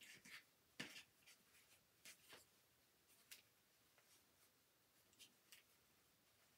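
Near silence with a few faint rustles and light taps of hands handling a fabric hat while stuffing it with cotton balls.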